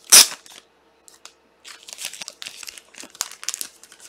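Trading-card pack wrapper and cards being handled. A sharp crinkling rustle comes just after the start, then a pause, then a run of short crinkles in the second half.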